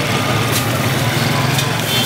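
Street noise in a crowded square: a small engine runs steadily nearby, with people's voices mixed in.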